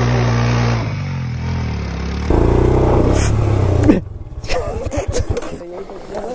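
Motorcycle engine held at high revs, then revved harder and louder about two seconds in as the rear tyre spins in loose dirt on a slope. The engine note cuts off suddenly about four seconds in, and people's voices follow.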